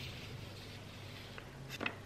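Quiet room with a faint steady low hum; near the end, a brief cluster of soft clicks and taps from cards and tools being handled on a tabletop.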